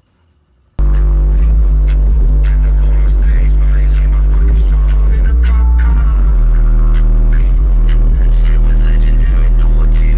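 Two 15-inch subwoofers in the back of a Chevrolet Cobalt playing bass-heavy music at very high volume, heard from inside the car. It starts suddenly about a second in, with the deep bass far louder than anything else.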